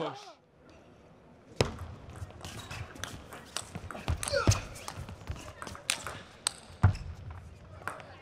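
Table tennis rally: the ball clicks sharply off the rackets and the table in a quick, irregular run of hits that starts about a second and a half in.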